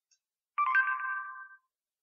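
Google Now voice-search chime from a Nexus 4 phone: a short electronic tone about half a second in, fading out within a second, signalling that the spoken query has been captured and the search is under way.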